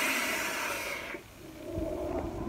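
Steady airy hiss of a drag drawn through a freshly built Geekvape Athena rebuildable atomizer, fading away a little over a second in. Near the end comes a low breathy rumble as the vapour is blown out.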